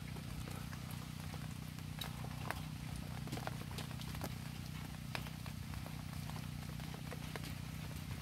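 Rain with scattered drops dripping and ticking at irregular intervals, over a steady low hum.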